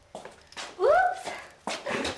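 A single short whine-like call about a second in, sliding up in pitch and then holding briefly. A couple of sharp knocks follow near the end.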